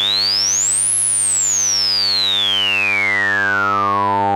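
Abstract Data ADE-20 analog voltage-controlled filter in band-pass mode at full resonance, filtering a 100 Hz sawtooth. A steady low buzz carries a sharp resonant tone that sweeps up quickly to a very high pitch about a second in, then glides slowly back down.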